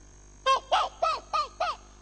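A man's voice imitating a bird crying, through a microphone: five quick calls, each falling in pitch, starting about half a second in.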